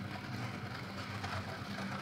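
Steady low hum under a faint even hiss: the background noise of the recording, with no distinct events.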